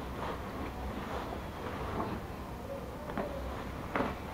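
Damp microfiber cloth being wiped over a white faux-leather sofa arm: soft, quiet rubbing strokes over a steady low hum, with one short click near the end.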